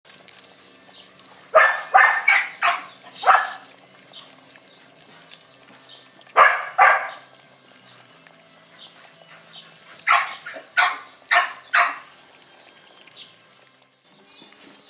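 Dog barking in three bursts: about five quick barks near the start, two in the middle, and about five more near the end.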